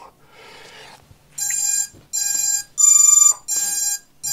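Electronic beeps from an FPV quadcopter as its INAV flight controller reboots: four short beeps about half a second long, starting about a second and a half in, the third higher and louder than the others.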